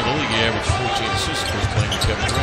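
A basketball being dribbled on a hardwood court, the bounces heard as short knocks over a steady arena din.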